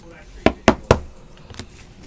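Three quick, sharp taps on a tabletop from trading cards being knocked against it, in the first second.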